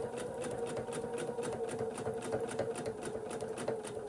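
Husqvarna Viking sewing machine running steadily, its needle clicking in a rapid even rhythm over the motor's hum, as it stitches an outline along the edge of a fused appliqué piece.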